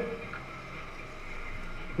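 Faint, even background noise with no distinct event.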